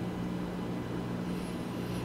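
Room tone: a steady low hum with faint hiss.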